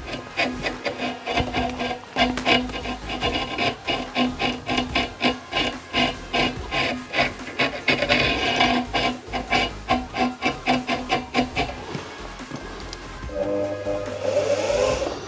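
Velcro-wrapped stick raked rapidly and repeatedly along a twisted wire dubbing brush, a scratchy rasp of several strokes a second, teasing the synthetic fibres out. About a second before the end, the brush-spinning machine's sewing-machine motor starts a steady whir.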